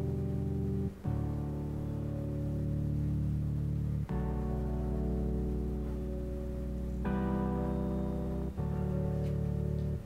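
Layered electric-piano keys imitating a Fender Rhodes, built from a Serum patch and two distorted Prophet patches split into low and high registers. They play held chords that change four times.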